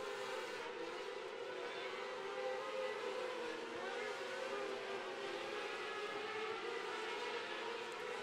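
Engines of several 600cc outlaw micro sprint cars racing on a dirt oval: a faint, steady drone whose pitch wavers slightly as the cars go around.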